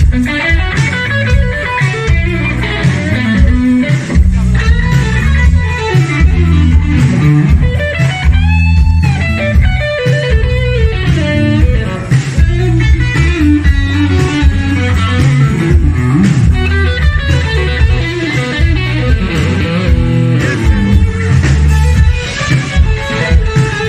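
Live blues-rock band playing an instrumental passage: electric guitar lines over bass guitar and drums. Near the middle one long note bends up and back down.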